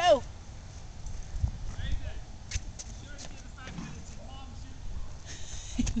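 A short, loud falling vocal cry right at the start, then faint scattered voice sounds and a few soft clicks over quiet outdoor background, with laughter starting near the end.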